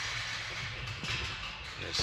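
Steady low hum and hiss of background noise inside a parked car's cabin, with a man's voice starting near the end.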